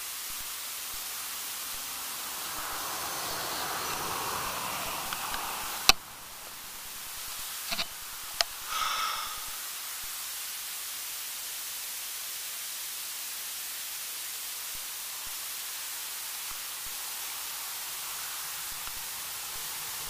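Steady hiss with no other continuous sound, broken by one sharp click about six seconds in and a few softer clicks and a brief scuff around eight to nine seconds. These are typical of camera handling.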